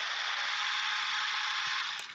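Ninja Nutri Blender personal blender, a 900-watt push-to-blend model, running at full speed and blending fruit into a smoothie in its single-serve cup: a steady, even, hissing rush with no pauses.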